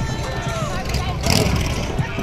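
Parade street noise: spectators' voices and calls over the low, steady running of a side-by-side utility vehicle rolling past, with a brief sharp noise a little past halfway.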